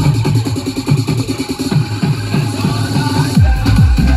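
Loud electronic dance music played over a loudspeaker, its beat made of falling bass sweeps about three a second; a heavier low bass comes in near the end.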